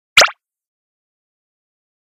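A single short edited-in sound effect, a quick blip lasting about a fifth of a second just after the start.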